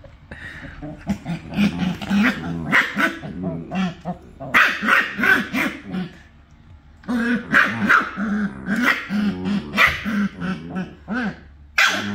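Shiba Inus, an adult and a puppy, play-fighting with a run of short growls and barks, with a brief lull about halfway through.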